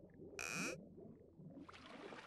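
Faint cartoon underwater sound effects: soft, repeated low bubbly glides, with a short, bright, hissing sound effect about half a second in.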